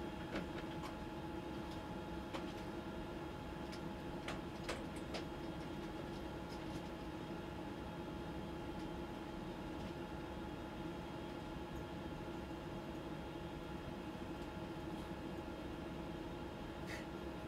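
Steady hum of the space station's cabin ventilation and equipment, holding several fixed tones. A few faint clicks come in the first five seconds.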